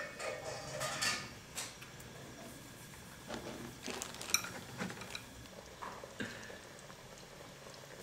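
Scattered light clicks and taps of chopsticks against the hot pot and dishes, the sharpest about four seconds in, over a low bubbling of the simmering hot-pot broth.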